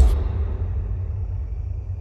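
Trailer sound design: a deep low rumble dying away slowly after a boom hit, with the music cut off just as it starts.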